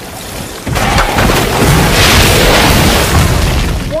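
A loud rumbling crash of dense noise, like an added disaster sound effect of something breaking through the ceiling onto the bed. It swells sharply about a second in, holds steady, and then cuts off suddenly.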